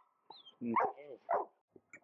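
A bullmastiff giving two short pitched vocalizations, one just under a second in and another about half a second later, eager for the burger being served to him.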